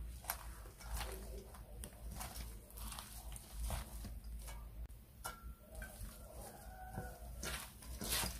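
Bánh tráng trộn (Vietnamese rice paper salad) being tossed by gloved hands in a stainless steel bowl: quiet crinkling and squishing of the dressed rice paper and shredded mango, with scattered light clicks.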